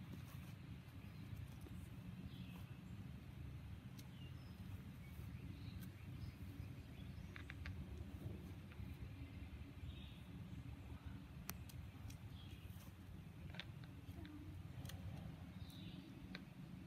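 Quiet outdoor ambience: a steady low rumble, with faint scattered bird chirps and a few light clicks.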